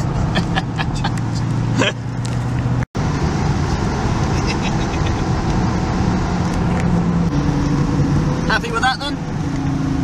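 TVR Chimera 400HC's Rover V8 engine running under way, heard from inside the cabin. Its steady note steps in pitch a few times in the later seconds, and the sound breaks off completely for a moment about three seconds in.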